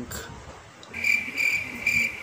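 Cricket chirping: a steady, high pulsing trill that starts suddenly about a second in, pulsing about three times a second.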